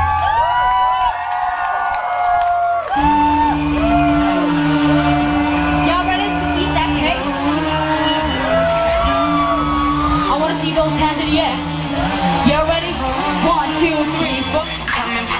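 Female pop singer belting sliding vocal runs through a PA, unaccompanied for about the first three seconds. Then keyboard backing comes in with a held low note and a bass beat, and she keeps singing runs over it.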